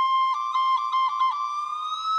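Solo flute playing a single melody line: a held note decorated with a quick run of short grace-note dips, then sliding slowly upward in pitch.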